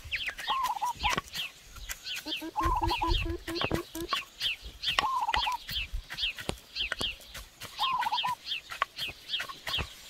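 Pestle pounding in a clay mortar, a dull knock roughly once a second, while birds call throughout with repeated short descending chirps and a warbling call every two to three seconds.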